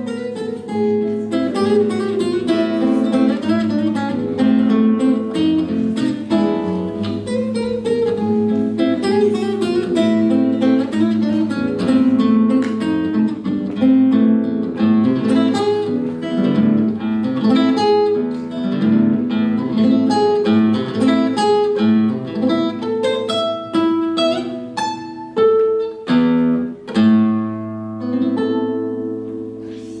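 Solo classical guitar with nylon strings, played fingerstyle: a running line of plucked notes and chords over a repeated low bass. Near the end a chord is left ringing and fades away.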